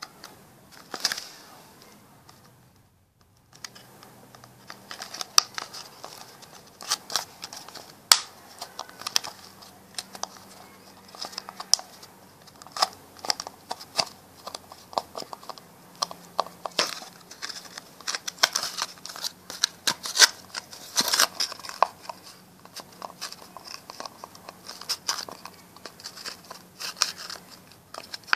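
Thin plastic bottle crinkling and clicking in irregular bursts as it is handled and squeezed while soft modelling-clay patches are pressed onto it, with a short lull about three seconds in.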